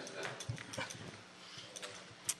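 Faint meeting-room background noise between speakers: a low murmur of distant voices, with a soft knock about half a second in.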